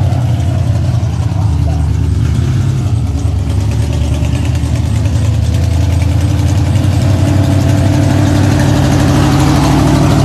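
Dirt modified race car's V8 engine running at low speed as the car rolls slowly, a loud steady low engine note that rises slightly near the end.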